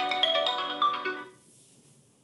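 Phone ringtone: a quick melody of bright, mallet-like notes that stops suddenly a little over a second in.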